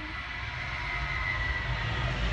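Low engine and road rumble inside a car, growing louder as it moves off, under a steady high whine from a jet aircraft's engines.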